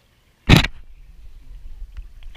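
A sudden loud splash of pool water right at the camera about half a second in, followed by uneven water sloshing as the camera sits at the surface.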